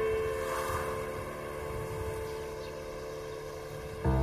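A low, noisy rumble, like wind or a motor on the water, under a single held tone that slowly fades.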